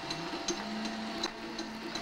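Robby the Robot figure's internal motors running with a steady whirr and faint light ticking; a steady hum comes in about half a second in.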